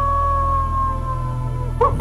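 A long, steady canine howl held on one pitch, dropping slightly and cutting off just before speech resumes, over low droning background music.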